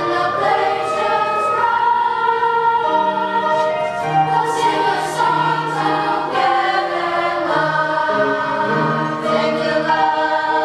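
Middle school choir singing, with held notes that move from one chord to the next every second or so.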